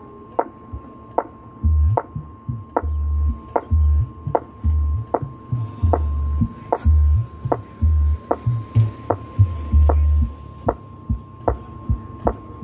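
Large outdoor PA speaker stacks during a sound check: a steady click about every 0.8 seconds over a steady tone, with heavy deep bass notes coming in about a second and a half in.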